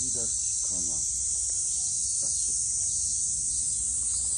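A steady, high-pitched chorus of summer cicadas droning without a break among the trees.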